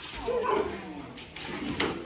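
A dog giving a short, whining vocal sound in the first half-second, followed by a couple of sharp clicks near the end.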